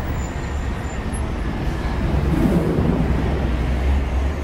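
Cinematic intro sound effect: a loud, deep, steady drone with a noisy hiss over it, leading into the intro music.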